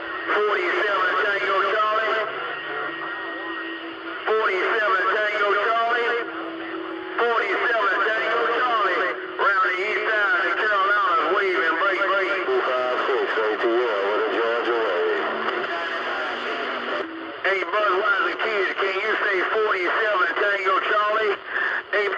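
CB radio receiving distant skip stations on channel 28: several voices come in over one another through the receiver's speaker, hard to make out, with a brief steady heterodyne whistle about two seconds in.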